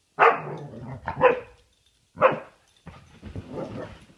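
Dogs in rough play: three sharp barks about a second apart, then a lower, rougher, continuous sound near the end as one dog jumps onto the couch at another.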